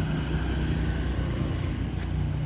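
Steady low engine rumble of a running motor vehicle.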